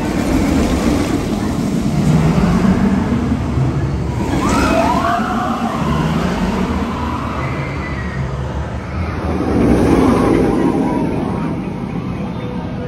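A VelociCoaster steel launch coaster train rushing along its track with a deep, swelling rumble. Riders scream about four to five seconds in, and the train rumble swells again near ten seconds in.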